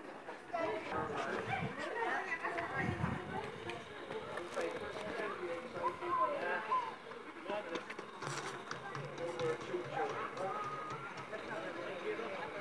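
Indistinct chatter from several people's voices, with no words clear enough to make out.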